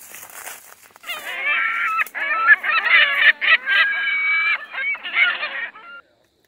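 A loud burst of honking animal calls, many overlapping and wavering in pitch, starting about a second in and lasting about four and a half seconds with short breaks. It sounds tinny and cut off at top and bottom, like a sound clip laid over the footage.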